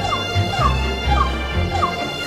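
Background music with a steady bass line and held tones, over which a run of short falling chirps repeats about three times a second.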